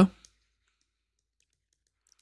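Near silence with a few faint, scattered clicks from a stylus on a tablet screen while words are handwritten.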